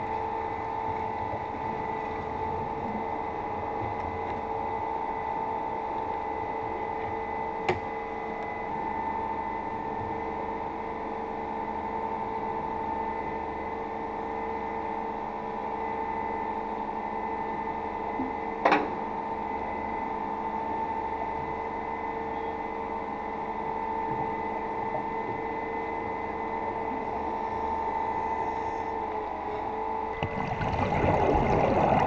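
A steady mechanical hum heard underwater, holding a few fixed tones, with two sharp clicks, one about 8 seconds in and one near 19 seconds.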